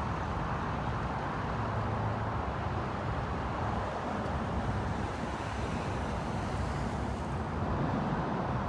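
Steady road-traffic noise: an even hum of passing cars with no distinct events.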